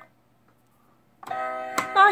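Light-up piano staircase of a battery-powered Koeda-chan tree-house toy: a step is pressed and plays a steady electronic note. The note starts about a second in after a near-silent gap, with a small click just before the end.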